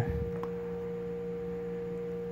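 Steady electrical hum in the recording, a few constant tones held at one pitch, with a faint click about half a second in.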